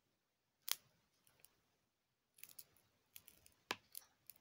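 Faint, sharp crackling clicks at irregular intervals: a loud one about three-quarters of a second in, a cluster of smaller ones past the middle, and another loud one near the end.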